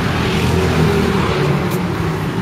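Road traffic: a car engine running steadily at low speed, a low hum over road noise.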